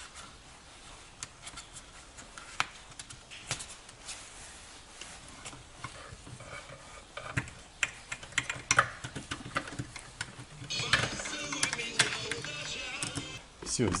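Scattered small plastic clicks and knocks as an Audi Q7 exterior mirror assembly is handled and its wiring harness is pulled out through the door frame, with a louder stretch of rustling and scraping about eleven seconds in.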